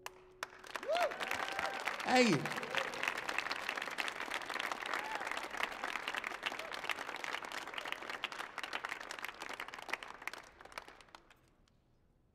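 Audience applauding and cheering at the end of a song, with a few shouts from the crowd near the start. The applause fades out about ten seconds in.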